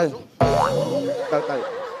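Cartoon 'boing' spring sound effect: a sudden thud about half a second in, then a wobbling, springy tone that slowly fades. It marks a comic drop onto a chair.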